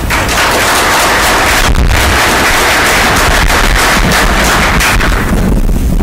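Audience applauding: dense, loud clapping that dies away near the end.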